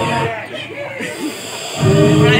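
Themed soundtrack of music and voices playing over loudspeakers. It drops quieter about a quarter second in, then comes back loud near the end.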